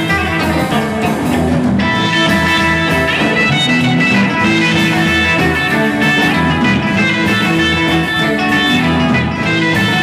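Live rock and roll band playing an instrumental passage: electric guitars over an upright double bass and drum kit, loud and steady, with the sound filling out in the treble about two seconds in.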